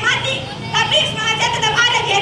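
A girl's voice speaking into a handheld microphone in high-pitched phrases.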